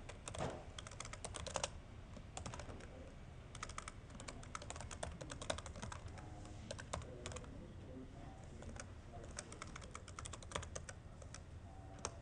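Computer keyboard typing, faint through a room microphone, in several quick runs of keystrokes with short pauses between them.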